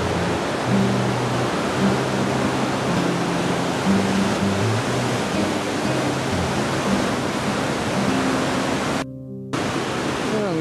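River rapids rushing over rocks below a small falls: a loud, steady roar of white water. Low steady tones that shift pitch every half-second or so run underneath. The sound breaks off for about half a second near the end.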